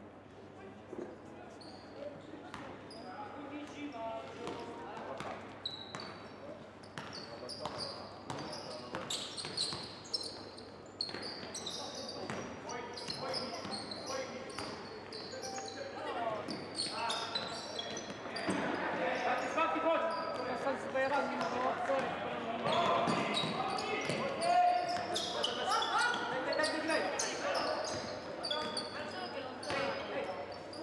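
Live youth basketball play in a large, echoing hall: the ball bouncing on the wooden court, with players and coaches shouting and calling. The court sounds and voices grow busier and louder about halfway through.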